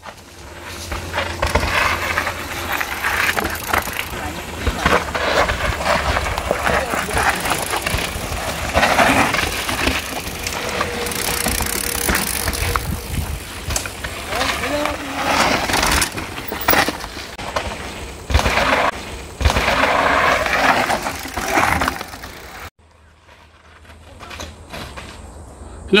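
Mountain bike rattling over a rough, root-strewn dirt trail descent: a dense, loud run of knocks and scraping that drops away suddenly near the end.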